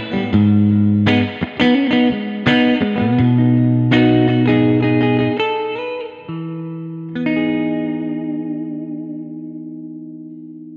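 1994 Made-in-Japan Fender Jazzmaster electric guitar played clean through a Fender Twin Reverb amp simulation, picking arpeggiated chords that ring together. About five and a half seconds in, a note rises in pitch, and a last chord struck about a second later is left to ring and slowly fade.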